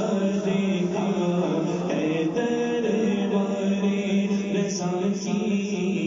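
Unaccompanied devotional chanting in the style of an Urdu naat or manqabat: a single melodic voice holding long, slowly wavering notes, with no instruments or drum beat.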